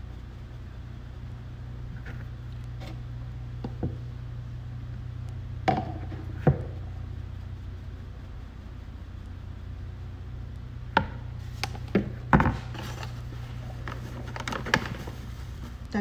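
A handful of sharp taps from a stainless-steel mesh sieve of flour being tapped by hand and knocked over a plastic mixing bowl: two taps a little before the middle and a quick cluster of four later on, over a steady low hum.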